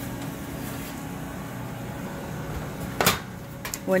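Commercial convection oven's fan running with a steady low hum while sheet pans of bagels are pulled from its racks. A single sharp knock sounds about three seconds in.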